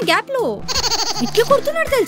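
A wordless, wavering voice with a bleat-like quality, over a faint steady music bed.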